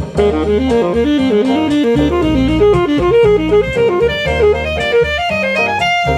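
Jazz intro music: a saxophone playing fast runs of short notes over a bass and drum backing.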